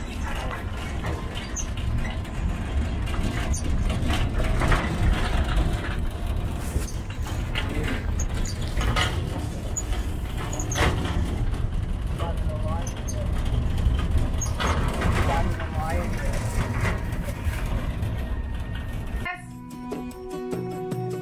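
Steady low rumble of an open-sided tourist tram rolling along a road, with indistinct voices of passengers. About a second before the end it cuts abruptly to music.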